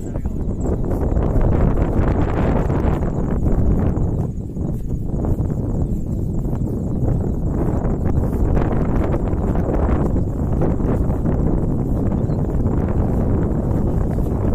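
Wind buffeting the microphone, a loud, gusting low rumble that swells and dips throughout.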